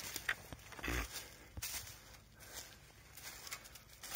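Footsteps in dry leaf litter and burnt sticks: an irregular run of faint rustles and crackles, with a soft low thump about a second in.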